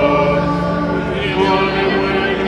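A choir singing slow, long-held notes.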